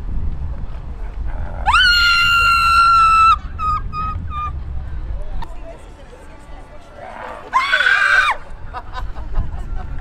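Startled screaming: one long, high-pitched scream lasting over a second, then about five seconds later a shorter, harsher scream, with low street rumble underneath.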